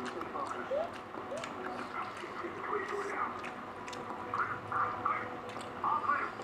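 Faint voices in the background, with soft mouth sounds and light clicks from someone chewing a mouthful of rice and vegetables eaten by hand.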